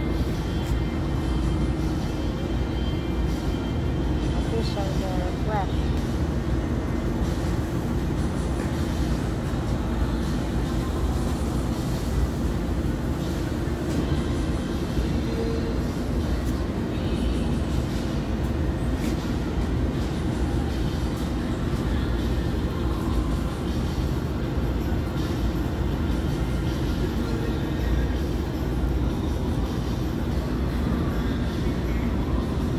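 Steady low rumbling store background noise with faint indistinct voices.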